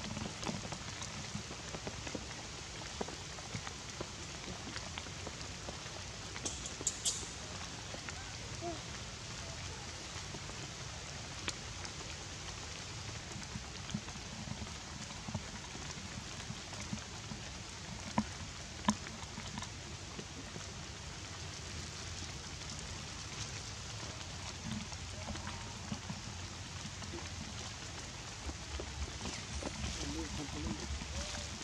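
Steady rain falling on leaves and ground, an even hiss with a few sharp ticks scattered through it.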